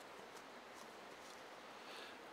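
Near silence: faint, steady outdoor background hiss.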